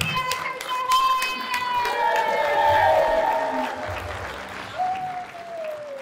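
Audience applauding at the end of a panel, with long drawn-out calls from the crowd held over the clapping; the last one falls away near the end.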